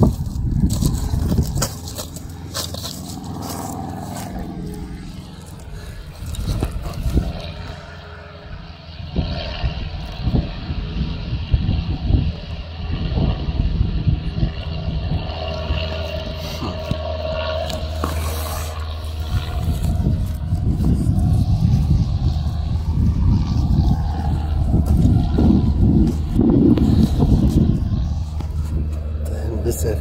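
Beach ambience: wind rumbling on the microphone, louder in the second half, with the distant voices of beachgoers.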